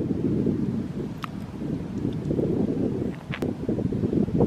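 Wind buffeting the camera microphone: an uneven, gusting low rumble.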